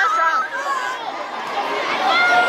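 Indistinct chatter of children's voices, several talking at once.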